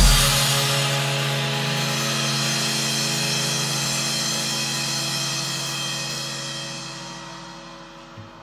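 Drum kit and a heavy-metal band recording landing one big accented hit, a crash-cymbal wash and a held guitar-and-bass chord that ring on and slowly fade away over about eight seconds.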